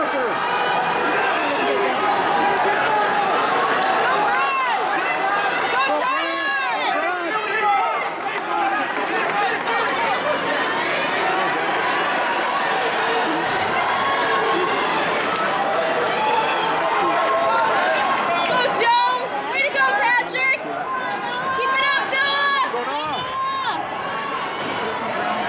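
Crowd of spectators talking and shouting encouragement to runners, with many voices overlapping. Louder rising-and-falling shouts break out about six seconds in and again near the end.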